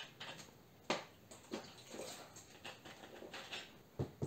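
Faint handling noises of a plastic water bottle being opened and handled: scattered small clicks and crinkles, the sharpest click about a second in.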